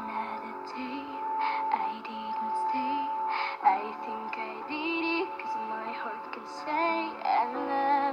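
A girl singing a slow pop ballad with piano accompaniment, holding one long note early on and wavering notes with vibrato later.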